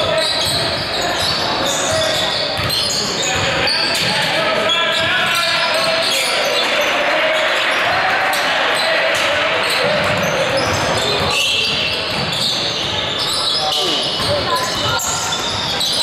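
Basketball being dribbled on a hardwood gym floor, with players' and spectators' voices echoing through the large hall.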